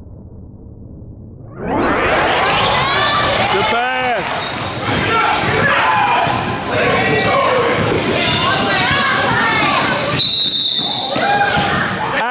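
Basketball being dribbled on a gym's wooden court, with players and spectators calling out, echoing in the large hall. The first second and a half is quieter and muffled before the game noise comes in loudly.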